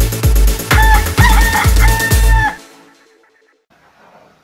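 Electronic dance music with a steady kick-drum beat and a rooster crowing over it in three drawn-out parts. Both stop about two and a half seconds in.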